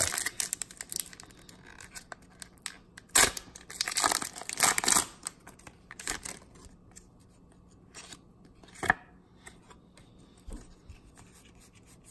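Foil booster-pack wrapper being torn open by hand in short rips and crinkles, loudest about three to five seconds in, then quieter rustling as the cards are slid out of the pack.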